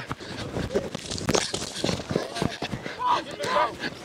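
Irregular knocks and thumps picked up by a lacrosse player's body-worn microphone during play, with faint shouted voices about three seconds in.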